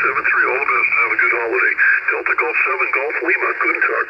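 A voice heard over a radio's receiver, thin and narrow-band like single-sideband reception on the 10-metre band. It runs throughout without a break.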